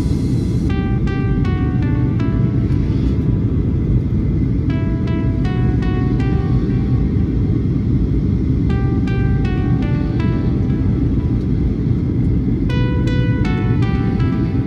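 Steady low rumble of a jet airliner's cabin in cruise-climb flight. Over it plays background music of quick runs of short, bell-like notes, returning in phrases about every four seconds.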